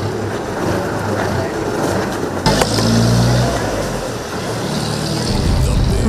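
Location sound of a bus idling, a steady low hum under a noisy haze. A single sharp knock comes about two and a half seconds in as officers work the door latch. A low swell follows near the end.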